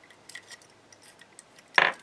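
A few faint, scattered metallic clicks and ticks of a brass key being turned partway in a heart-shaped trick padlock.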